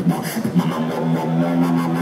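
Dubstep-style beatboxing: a human beatboxer holds a low, buzzing bass drone with his voice, steady through most of the second, with a few sharp mouth clicks near the start.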